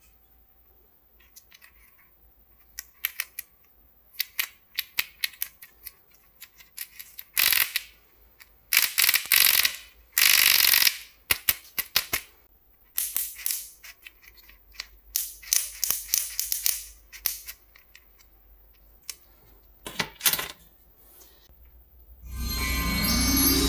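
Hard plastic penguin toy being handled and turned over: scattered clicks, taps and rattles of plastic, with several brief scraping bursts, busiest in the middle of the stretch.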